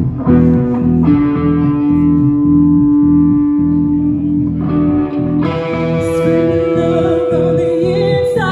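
Heavy metal band playing live: distorted electric guitars hold long ringing chords over bass and a steady drum beat. A female voice comes in singing a held note in the second half.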